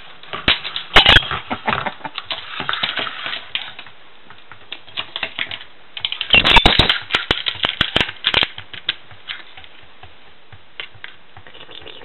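Small plastic lid clicking and clattering on a countertop as a lorikeet pushes and flips it with its beak: irregular clusters of sharp taps, with a dense flurry about six seconds in, then only a few scattered taps.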